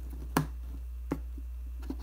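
One sharp click, then two fainter ones later, as the USB-C cable is worked out of and back into the connector of a Fnirsi USB-powered soldering iron to restart it. A steady low hum runs underneath.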